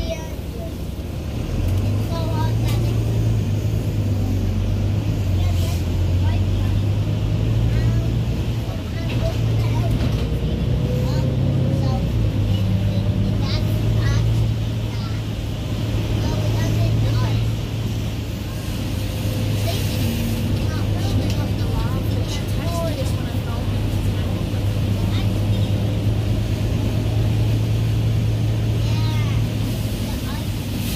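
Diesel engine of a Wright Gemini 2 double-decker bus, heard from inside the lower deck as a steady low drone. It builds about a second and a half in as the bus pulls away, then dips briefly twice at gear changes.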